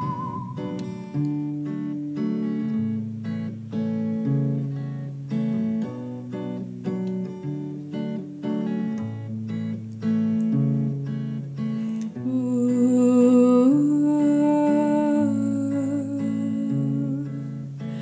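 Hollow-body electric guitar picked in an upbeat folk pattern, with short plucked notes over a moving bass line. About two-thirds of the way through, a wordless sung voice joins with long held notes.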